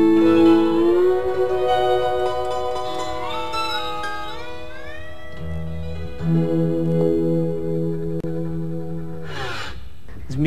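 Acoustic guitar played lap-style with a slide: ringing sustained notes and chords, with smooth slides up and down in pitch between them.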